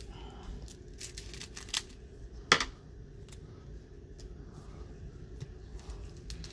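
Foil wrapper of a trading card pack crinkling and tearing in gloved hands: a few scattered sharp crackles, the loudest about two and a half seconds in, over a low steady hum.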